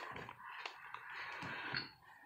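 Faint handling of plastic laundry detergent jugs, with a few light knocks and rubbing as one jug is moved against the other.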